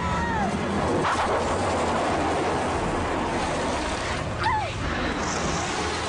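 Cartoon action sound effects: a steady rushing roar, with a girl's short yell at the very start and a brief pitched cry about four and a half seconds in.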